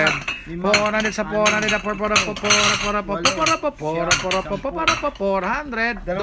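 Stoneware plates clinking and knocking against one another as they are lifted off and stacked, a quick, uneven run of clinks.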